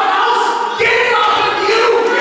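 Church congregation singing together, several voices holding long notes.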